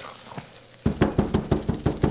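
Silicone spatula stirring thick, fully cooked hot process soap paste in a ceramic slow cooker crock. About a second in, a quick, even run of soft knocks and squelches begins, about six or seven a second.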